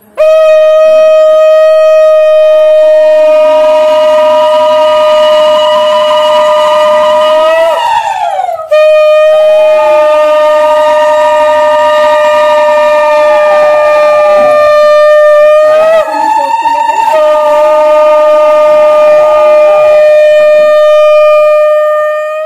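Conch shell (shankh) blown loudly in three long, steady blasts, each held for several seconds, the first two ending in a wavering fall in pitch.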